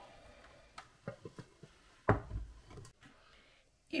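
A frying pan and a plate being turned over together to flip a cooked omelette out of the pan: a few light clicks and knocks, then one louder thud about two seconds in.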